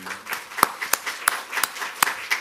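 Audience applause at the close of a talk, with one person clapping close to the microphone: his louder claps come about three a second over the spread-out clapping of the room.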